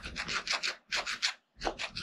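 Guinea pig chewing red bell pepper close to the microphone: a quick run of short crisp bites, several a second, with a pause of about half a second around the middle.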